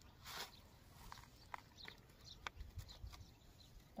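Faint handling sounds of duck eggs being gathered by gloved hands: a brief rustle near the start, then a few light, sharp clicks as the eggs knock together.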